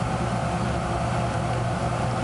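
Steady, fairly loud background hum with a constant hiss: room noise of a small sanctuary with no one speaking.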